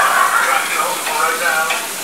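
Bacon frying in a pan, a steady sizzle, with wavering voice-like pitched sounds over it about a second in.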